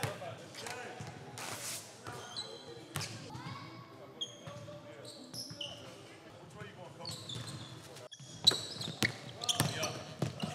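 Basketball being played on an indoor hardwood court: sneakers squeaking in short high chirps and the ball bouncing, echoing in a large hall, with a sharp bang about eight and a half seconds in.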